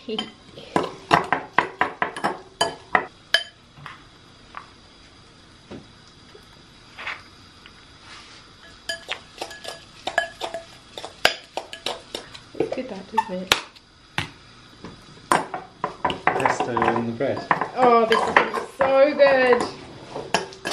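A metal fork clinking and scraping against a glass mixing bowl while a tuna mixture is stirred. The clicks come in quick runs at first, then sparser taps through the middle.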